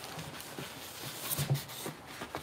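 Packing noise as a plastic-wrapped subwoofer in a styrofoam end cap is lifted out of its cardboard box: light knocks and plastic rustling, with a louder knock and crinkle about a second and a half in.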